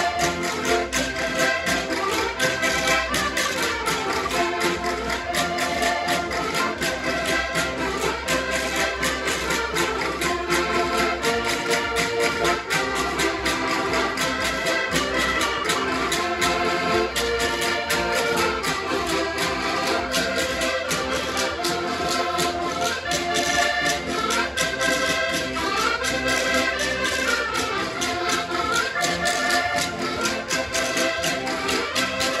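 Several diatonic button accordions playing a lively Portuguese folk tune together, kept in rhythm by a ridged wooden scraper (reco-reco) and a strummed cavaquinho.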